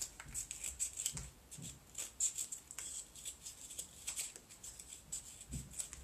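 Scissors snipping through a moulded-pulp cardboard egg box, a run of small irregular snips and crackles of the cardboard.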